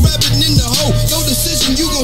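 Hip hop song playing: a heavy repeating bass beat with rapping over it.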